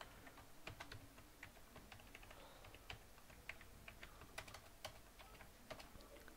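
Faint computer keyboard typing: scattered, irregular keystroke clicks.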